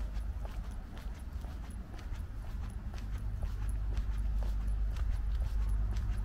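Footsteps on a stone-tiled walkway at walking pace, about two sharp steps a second, over a steady low rumble.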